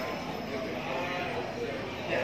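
Indistinct voices of shoppers talking, with no clear words, in a busy market.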